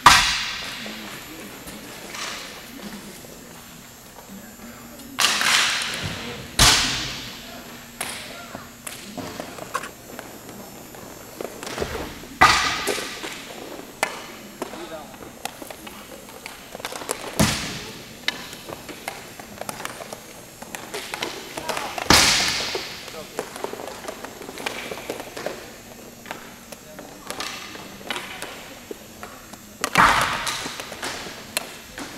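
Hockey pucks and sticks cracking against the rink boards and surface: about six loud, sharp hits spread irregularly, each ringing on in a long echo round the rink, with smaller knocks and taps between them.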